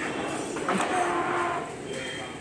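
A cow mooing once, a single call of about a second in the middle.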